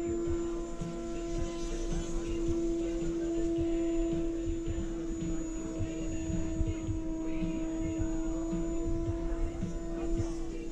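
A steady drone holding one pitch, with fainter higher tones above it and an uneven low rumble beneath.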